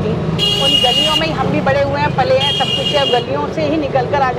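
A vehicle horn honking twice, each high-pitched blast just under a second long, the first soon after the start and the second about two seconds later, over a person talking and a steady low vehicle hum.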